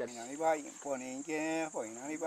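Men's voices chanting in long, wavering held notes, not in Spanish, over a steady high insect trill from the rainforest.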